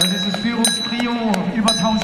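Hand bell rung in quick strokes, about three a second, with a high ringing between strokes: the last-lap bell of a track race. The announcer's voice runs underneath.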